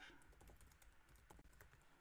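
Faint, irregular keystrokes on a computer keyboard: a few scattered key taps.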